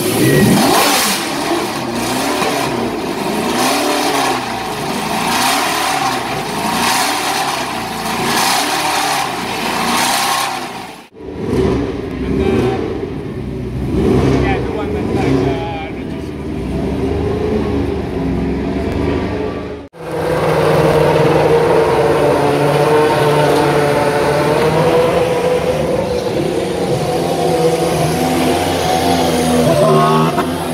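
Lotus 88 Formula One car's Cosworth DFV V8 firing up and revving hard in quick, very loud blips, which the caption calls one of the loudest things ever heard. After a cut about 11 seconds in, another F1 car's engine runs more quietly and unevenly. After a second cut near 20 seconds, an F1 engine holds a steady, even idle.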